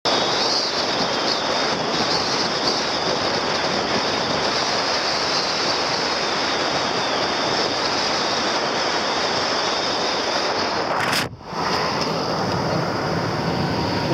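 Steady rushing wind and road noise of a car driving at speed, heard from inside the car. The noise drops away for a moment about eleven seconds in, then returns.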